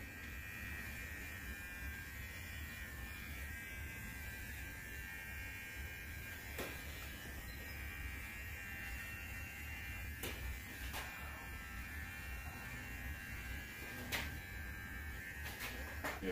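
Brio Axis T-blade hair trimmer running with a steady buzz while it trims the hair around the ears and neckline. A few faint clicks come through over the buzz.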